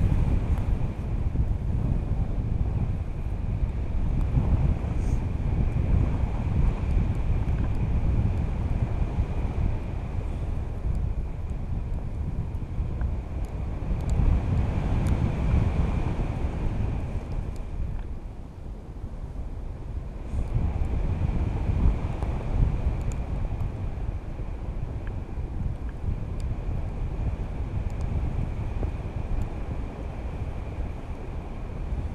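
Wind rushing and buffeting over an action camera's microphone in the airflow of a tandem paraglider in flight, easing briefly about two-thirds of the way in.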